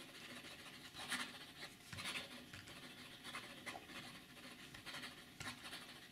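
Steel fine fountain-pen nib of a Waldmann Two-in-One writing quickly on grid notebook paper: a faint, irregular scratching of the nib, stroke by stroke across the page.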